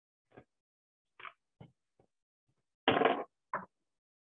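Scattered short clicks and knocks of metal hand tools and clamshell lathe parts being handled, with one louder clatter about three seconds in.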